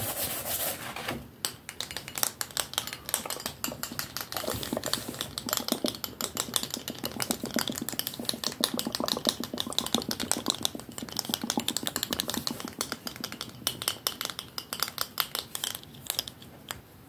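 ASMR hand sounds: fingertips tapping and scratching fast right at the recording phone, a dense run of crisp clicks starting about a second in.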